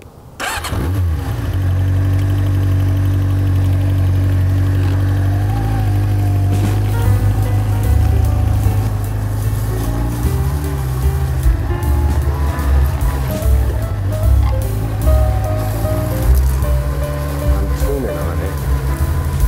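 Music over a motorcycle: a 1992 Yamaha XJ600's air-cooled 600cc four-cylinder engine starting and the bike riding away.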